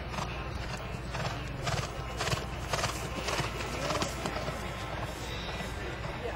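Hoofbeats of a horse cantering on grass, striking in a steady rhythm of about two strides a second.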